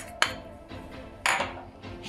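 A few light clinks and a short scrape of a spoon against a bowl as cornflour is added to the fish marinade, over soft background music.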